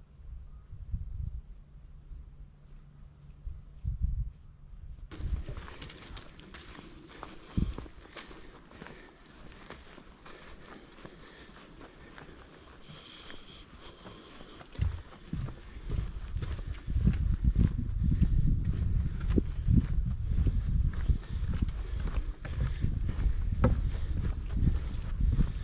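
Footsteps of a backpacker walking a trail, heard as low, muffled thuds about once a second. In the last third the steps grow louder and come thicker, on wooden boardwalk planks.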